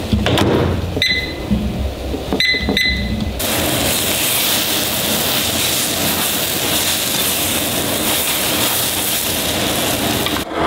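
A microwave beeps three times, once about a second in and twice a little later. From about three seconds in, egg whites with spinach fry in a nonstick pan with a steady sizzle.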